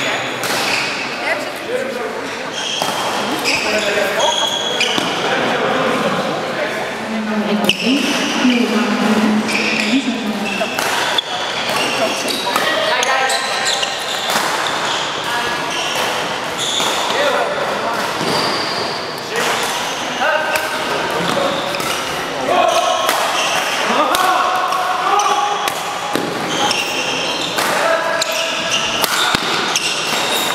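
Echoing sports-hall din during badminton: a mix of voices from around the hall, scattered sharp racket hits on the shuttlecock, and short high squeaks of shoes on the court floor.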